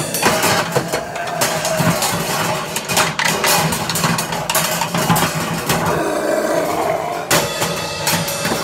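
A drum kit played continuously with fast, dense stick strokes on the drums over a constant wash of cymbals.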